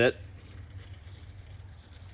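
A quiet, steady low hum of background noise, after the last syllable of a spoken word at the very start.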